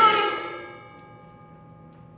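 A male opera singer's held note ends at the start and rings away in the hall over about half a second. Quiet, steady instrumental tones are left sustaining underneath.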